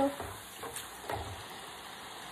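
Crinkle-cut fries sizzling steadily in hot oil in the basket of an electric deep fryer, at the end of their frying.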